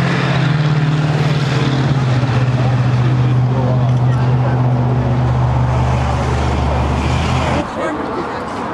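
A loud, steady low engine drone, with a deeper rumble joining it about five seconds in; it cuts off abruptly near the end.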